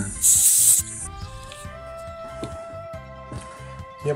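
Compressed air hissing out of the pressure relief valve on the plastic tank of a Volat 4-litre pump-up compression sprayer, one short burst of about half a second near the start as the pumped-up tank is depressurised. Quiet background music follows.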